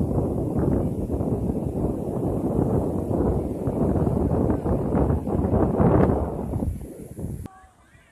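Strong wind buffeting the microphone in loud, choppy gusts over the roar of rough surf, cutting off abruptly near the end.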